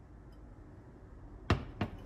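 A kettle set down on a glass-ceramic cooktop: two hard knocks, a sharp one about one and a half seconds in and a lighter one just after.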